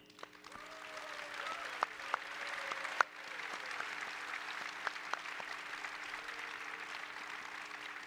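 Audience applauding, building over the first second and easing off near the end, with a few sharper single claps standing out.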